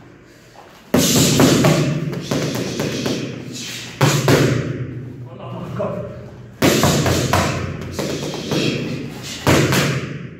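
Boxing gloves striking handheld focus mitts in four bursts of punches, each opening with a hard smack and followed by a run of quicker hits.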